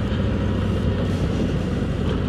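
2024 Harley-Davidson Road Glide's Milwaukee-Eight 117 V-twin running steadily as the bike rolls along at low speed, heard through a microphone inside the rider's full-face helmet.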